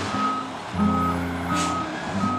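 A garbage truck's reversing alarm beeps three times with a steady high tone, over the truck's engine running as it backs out into the road.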